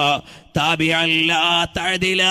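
A man's voice chanting Arabic in a melodic, sustained intonation, holding long wavering notes, with a short break about a quarter second in.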